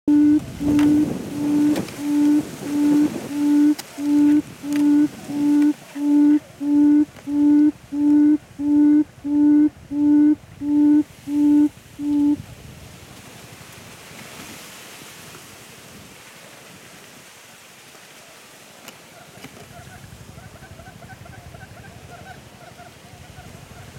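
Quail calling: a run of about twenty loud, low hooting notes, each held briefly at one pitch, coming a little faster as it goes and stopping about twelve seconds in. A faint fluttering trill follows near the end.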